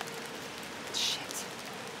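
Steady rain: an even hiss with scattered ticks of drops, and a brief louder, higher hiss about a second in.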